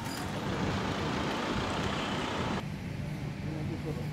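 Steady motor vehicle and road noise, which cuts off sharply about two and a half seconds in to quieter street sound with faint voices.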